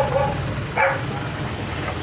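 A dog barking: two short barks in the first second, over a steady low rumble.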